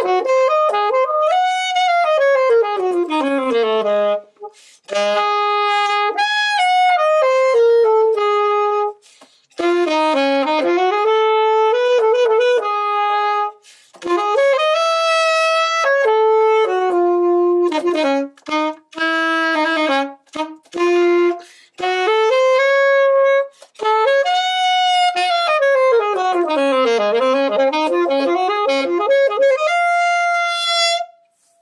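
Alto saxophone playing a solo melody in phrases broken by short pauses for breath, with quick scale runs down and back up. It holds a last note near the end.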